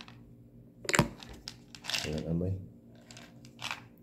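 A sharp click about a second in from handling an opened plastic tablet bottle, followed later by a brief rustle near the end.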